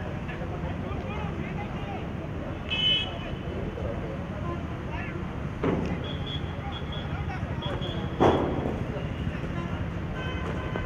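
Open-air ground ambience: a steady wash of background noise with faint distant voices, a short high-pitched toot about three seconds in, and a sharp knock just after eight seconds.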